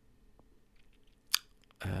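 A quiet room with a single sharp click about a second and a half in, then a man's short "uh".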